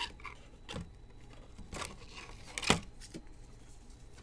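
Trading cards in clear plastic sleeves and holders being handled on a table: scattered soft clicks and rustles, with one sharper click a little under three seconds in.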